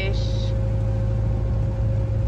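A yacht's inboard engine running under way, a loud steady low drone with a faint steady whine above it.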